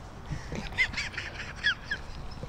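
Birds calling: two pairs of short chirping notes, one pair about a second in and the other near the end, over a faint steady background hiss.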